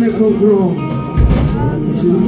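Live gospel worship music: voices singing into microphones, with backing singers. A low thump about a second in.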